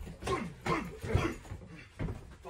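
A man laughing in several short bursts.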